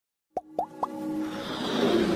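Intro sound effects: three quick rising pops about a quarter second apart, then a swell of music building louder.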